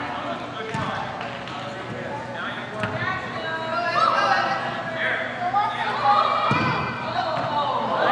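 Voices shouting and calling out across a reverberant indoor sports hall during a soccer game, with a few dull thuds of the ball being kicked.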